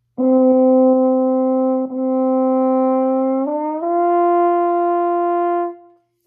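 French horn playing a sustained note, re-articulated once about two seconds in, then slurring upward through a brief in-between pitch to a higher note that is held and fades out just before the end. The rising slur is the gradual, connected interval (a fourth) of a horn warm-up flexibility exercise.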